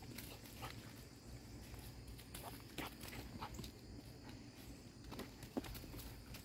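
A small dog scuffling on dry dirt and twigs as it plays with its toys: faint scattered rustles and light clicks, the loudest a little before the end.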